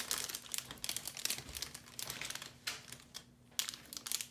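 Paper wrapper crinkling as it is unrolled and pulled off a small toy by hand, in irregular crackles with a brief lull about three seconds in.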